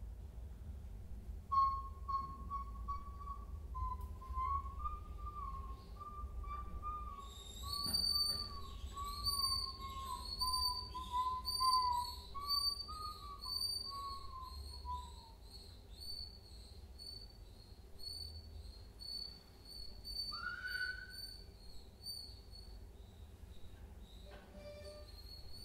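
Free improvised music for voice and electronics made of thin, whistle-like tones. A faint wavering tone holds around one middle pitch for the first half. From about a third of the way in, a much higher tone pulses over and over until the end, with a short upward glide near the end.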